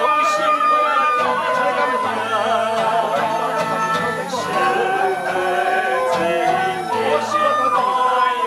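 A small amateur ensemble of violin and vertical bamboo flutes playing a slow melody in unison, the held notes wavering with vibrato and sliding between pitches over a low bass line.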